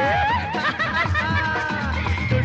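A Hindi film song plays with a band backing. A male singer does playful laughing, yodel-like vocal runs with a wavering, bending pitch.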